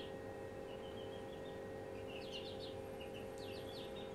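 Faint chirps of small birds in short quick clusters of high notes, heard three times, over a steady low hum.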